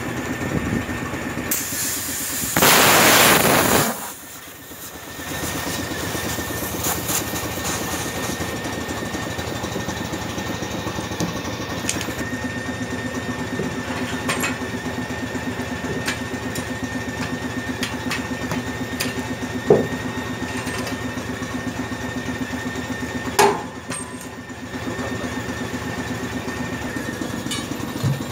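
An engine running steadily throughout. About two seconds in there is a loud burst of air hissing, lasting about two seconds, from the air hose on a truck tyre's valve. Two sharp knocks come in the second half.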